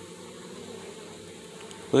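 Steady hum of many honeybees from an open hive.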